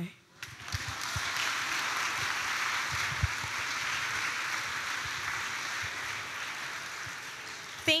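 Audience applauding steadily, starting about half a second in and easing slightly before it stops near the end.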